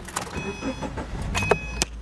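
Camera being handled inside a car: knocks and rustles over a low rumble that builds toward the end. Two short, steady high beeps sound about a second apart.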